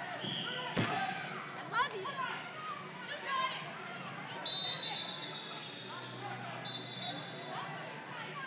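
Voices talking in a large hall, with two sharp thuds in the first two seconds and a referee's whistle blown about halfway through, then a second, shorter blast.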